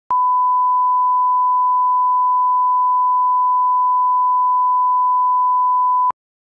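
Broadcast line-up test tone at 1 kHz: a single steady pure pitch that comes in with a click just after the start and holds without change.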